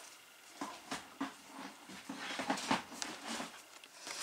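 Quiet handling of a thick card album page and loose card pieces on a cutting mat: soft rustles and a scatter of light taps and knocks.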